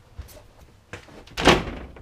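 A louvered wooden closet door being opened: a couple of light clicks, then one loud knock about one and a half seconds in.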